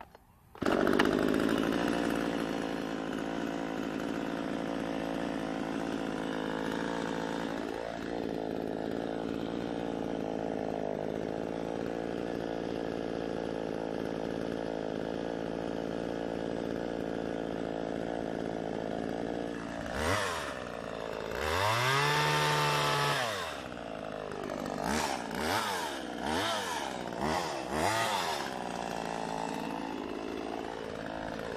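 Two-stroke chainsaw engine catching about half a second in and then idling steadily. Near the end it is revved up once for a couple of seconds, then given several short quick revs before dropping back to idle.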